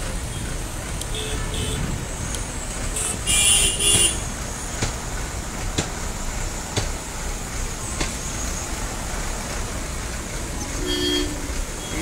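Road traffic in a standstill jam: a steady low rumble of many idling and creeping vehicle engines. A vehicle horn sounds loudly about three seconds in, in two short blasts, with fainter horn toots around a second in and near the end.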